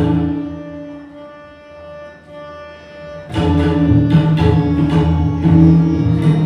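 Group of tabla played together, breaking off just after the start; a harmonium carries on alone with steady held notes, and the tabla come back in together, loud and dense, a little over three seconds in.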